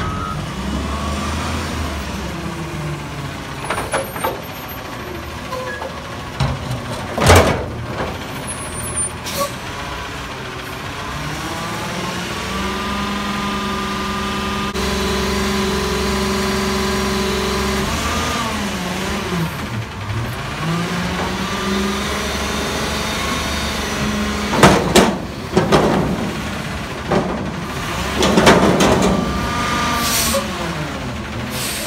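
Front-loader garbage truck's diesel engine revving and running as it drives up to a steel dumpster, its engine held at a steady higher speed for a stretch, then dropping and rising again as the hydraulic forks work. Sharp air-brake hisses and loud metal clanks break in, the loudest about seven seconds in and several near the end as the dumpster is picked up.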